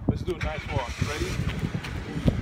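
A car driving past, its tyre and engine noise swelling about a second in and fading, under children's and adults' voices.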